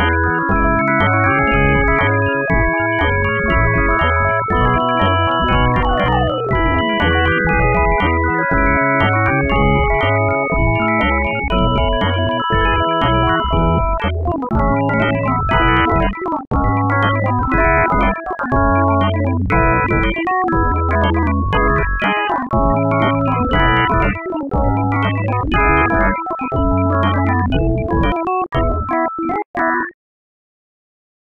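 Dense MIDI playback of a song converted note-for-note from its recording: hundreds of overlapping synthesized keyboard notes that imitate the original instruments and singing voice, the auditory illusion of hearing lyrics in a piano-like texture. Heavier low notes pulse through the second half, and the music stops abruptly at the song's end.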